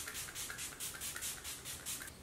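Pixi Rose Glow Mist setting spray misted from its pump bottle onto the face, a quick, even run of short sprays at about five a second.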